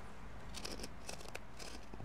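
Woven nylon hook-and-loop strap of an Apple Watch Nike Sport Loop band sliding easily through its loop, faint scratchy rustling with a few small clicks.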